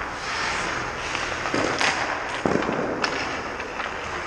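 Hockey pucks being shot and striking the net, goalie or boards: sharp cracks and heavy thuds echoing around an ice arena, the loudest crack just before the middle and a thud soon after.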